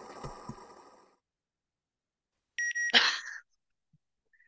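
A steady background sound fades out about a second in. After a pause come a short run of high electronic beeps and, right after them, a brief louder noisy burst.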